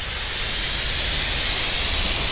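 A sound-effect riser: a rushing hiss that grows steadily louder, like a jet passing, building up toward an impact.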